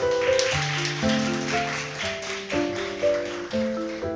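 Applause over background piano music, the clapping dying away near the end.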